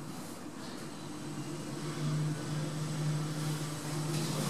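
KONE EcoDisc gearless lift machine humming steadily as the car travels between floors. The hum comes in about a second in and grows a little stronger about two seconds in.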